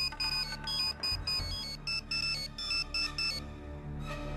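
Mobile phone ringtone: a quick electronic melody of short, high beeping notes, stopping about three and a half seconds in when the call is answered.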